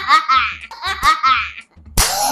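A young girl laughing in two high-pitched peals, with a sharp click near the end.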